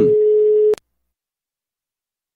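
A single steady telephone line tone, like a busy signal, lasting under a second and cut off by a click.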